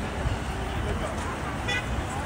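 Distant city street traffic heard from high above, a steady wash of rumble and hiss. A brief high-pitched beep comes near the end.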